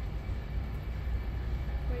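A steady low rumble with no distinct events, and a voice starting right at the end.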